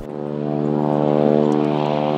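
Propeller-driven light aircraft engine droning, one steady pitched tone that grows louder to a peak about a second in.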